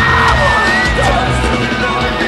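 Rock band playing live and loud: electric guitar and drums, with a high, held yelled vocal line over them.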